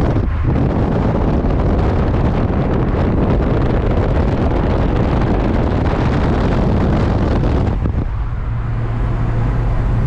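Wind buffeting the microphone and tyre and road noise from a car travelling at highway speed, with the microphone held out of the window. About eight seconds in, the rush drops off to a steadier low in-cabin drone as the microphone comes back inside the car.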